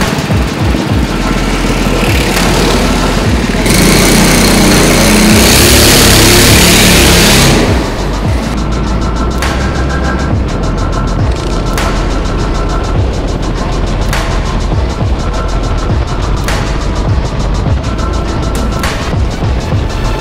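Twin-engine ProKart's two-stroke engines running loudly, loudest from about four to eight seconds in. After that, background music with a steady beat is laid over the kart's engine sound.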